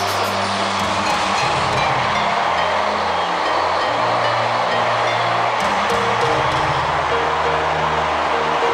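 Background music with held bass notes that change pitch every second or so over a dense, steady backing.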